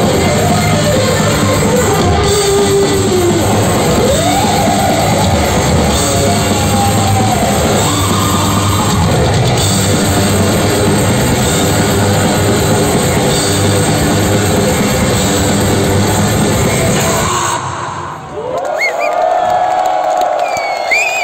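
A heavy metal band playing live and loud, with drum kit and guitars, heard from within the crowd. The song stops suddenly about 17 seconds in, and the crowd cheers, yells and whistles.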